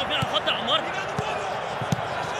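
Field sound of a football match in an empty stadium: distant players' shouts over a steady ambient hiss, with two dull thuds of the ball being kicked, one a little after a second in and one near the end.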